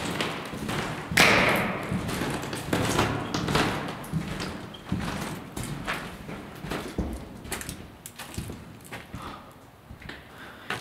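Footsteps on a wooden floor littered with peeling-paint debris: an uneven series of thuds and scuffs, with a louder, longer scrape about a second in.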